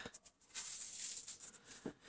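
Faint scratching of a pen writing on paper, ending in a small tick near the end.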